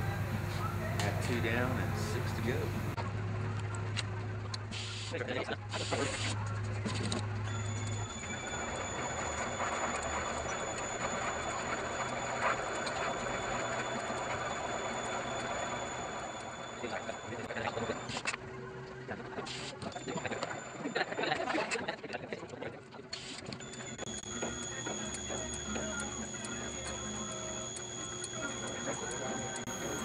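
Valve seat machine running, its single-blade radius cutter spinning in a cylinder-head valve seat to take a little more off, so that more of the 30-degree angle shows. A steady low hum for the first several seconds, then a thin high whine that drops out for a few seconds past the middle and comes back.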